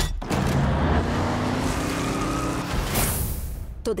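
Semi-truck's diesel engine running under load, a dense rumble with a steady low drone, then a brief hiss about three seconds in.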